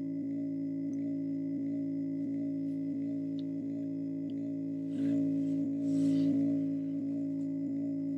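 Looped, layered vocal drone: stacked low sung "dum" syllables repeated by a looper pedal, making a steady chord that pulses about three times a second. About five and six seconds in, a brief breathy hiss rises over it twice.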